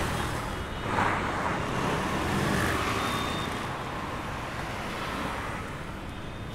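Steady street traffic din with vehicle engines running, a brief swell about a second in.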